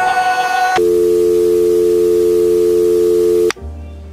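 Song ending in a loud, steady electronic tone of several pitches held for nearly three seconds, then cut off abruptly. Quieter music follows.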